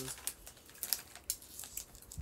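Crunchy cheese-puff snack being chewed: scattered sharp crackles.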